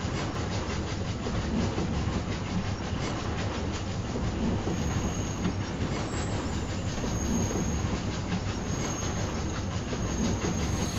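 Train running on the rails, heard from inside a railroad car: a steady rolling rumble with a fast, even clatter of the wheels.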